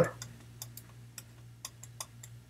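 A stylus tapping and clicking on a pen tablet while handwriting: a string of light, irregular ticks over a faint steady low hum.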